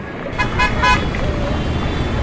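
Street traffic ambience fading in: a steady rumble of passing cars, with three short car-horn toots about half a second in.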